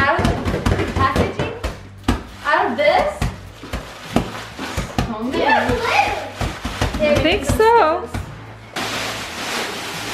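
Thin plastic wrapping crinkling and tearing as hands rip and pull it off a compressed foam bean bag filling, in a string of sharp crackles. Near the end it becomes a steadier rustle as the big plastic sheet is dragged away.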